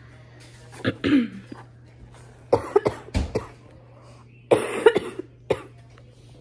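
A woman clears her throat about a second in, then coughs in two short fits of several coughs each. It is a chesty, congested cough from a cold she is sick with.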